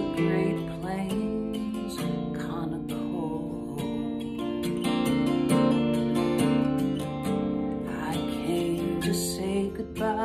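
Steel-string acoustic guitar strummed in a steady rhythm, an instrumental passage between the sung lines of a folk-country song.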